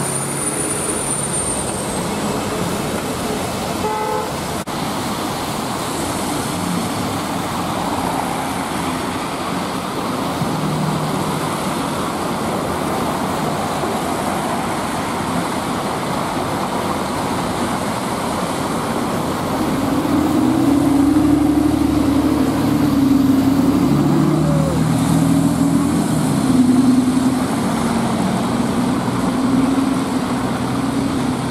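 City street traffic: vehicles passing on a wet road, with car horns sounding. In the last third a loud, sustained horn-like tone wavers on for several seconds.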